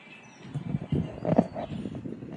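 Footsteps on a wooden boardwalk: a run of dull, uneven thumps beginning about half a second in.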